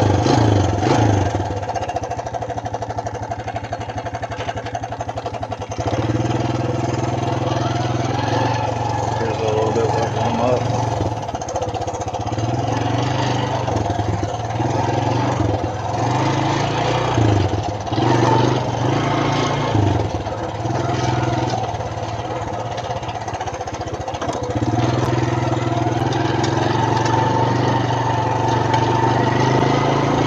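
Suzuki LT160 Quad Runner ATV's single-cylinder four-stroke engine running, on its first ride after three years with a freshly adjusted carburettor. It gets louder about six seconds in, rises and falls with the throttle through the middle, and pulls steadily again near the end.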